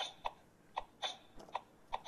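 Oreo DJ Mixer toy playing a quiet, really simple beat from its speaker, with a short hit about every half second and lighter high ticks in between.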